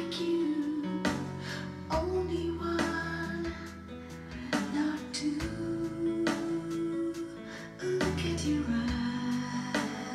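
A woman singing a gentle children's song to an accompaniment of strummed guitar chords.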